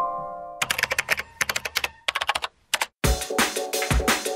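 A fading piano phrase gives way to a quick run of computer keyboard typing clicks lasting about two seconds. After a brief silence, electronic drum-and-bass music with a heavy beat starts near the end.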